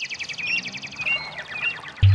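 Birdsong: a rapid high trill at the start, then a string of short upward-sweeping chirps, over a steady background hiss.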